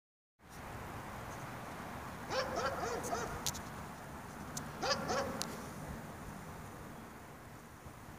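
Short animal calls, each rising and falling in pitch: four quick ones about two and a half seconds in and two more around five seconds, with a few sharp clicks among them. A low steady hum runs underneath.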